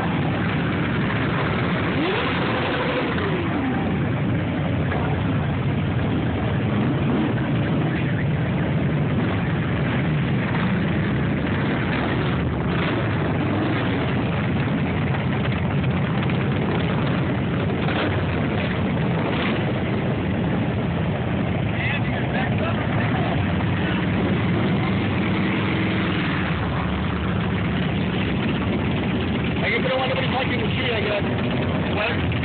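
A group of cruiser motorcycles idling and riding slowly past in a steady, unbroken engine rumble; one engine revs up and back down about two seconds in.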